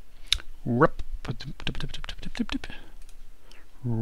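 Typing on a computer keyboard: an irregular run of key clicks, with a short murmured vocal sound about a second in.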